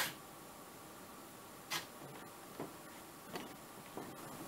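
Quiet room with three brief faint knocks, the clearest about a second and a half in and two fainter ones later.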